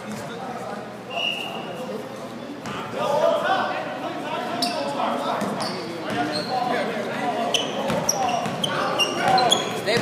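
A basketball bouncing on a hardwood gym floor during a game, with players shouting. The sound echoes around a large gym hall.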